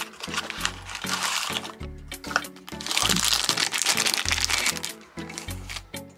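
A small cardboard toy box being opened and a die-cast model car slid out: crinkling and rustling of the packaging in two bursts, about a second in and again from about three seconds in, over background music with a steady bass line.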